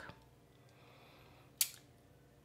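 Faint ice cream truck jingle, its tune barely audible. A short, sharp hiss comes about one and a half seconds in.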